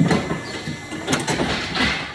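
Metal clanks and a sliding scrape from a cattle hoof-trimming crush as its gate is opened to release the cow: a sharp clank at the start, more clatter about a second in, and a scrape near the end.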